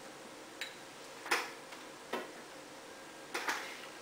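A pump-dispenser bottle and a small glass bowl being handled: four short clicks and taps, the loudest a little over a second in, over faint room hiss.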